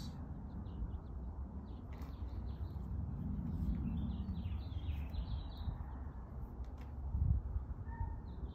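A small bird chirping outdoors, with a quick run of short high notes in the middle, over a steady low rumble.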